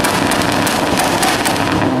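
Car exhaust crackling and popping, a fast, dense run of sharp pops over engine noise.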